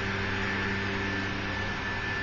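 A steady low hum made of several even tones, with a hiss over it: the constant background noise of the room.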